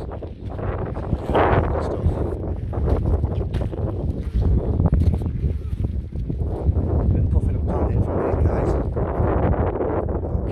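Wind buffeting the microphone as a continuous low rumble, with a man's voice talking over it in stretches.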